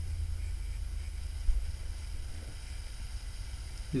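Steady low rumble of background room noise, with one brief soft thump about one and a half seconds in.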